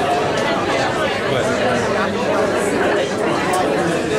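Crowd chatter: many spectators talking at once in an indoor hall, a steady mass of overlapping voices with no single voice standing out.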